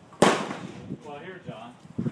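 A single gunshot from a lever-action .357 Magnum saddle rifle, about a quarter second in: a sharp crack that dies away within about half a second.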